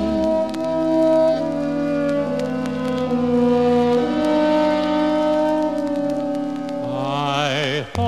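Orchestra and choir holding slow, steady chords that change every second or so in an interlude between sung lines. A singing voice with vibrato comes back in near the end.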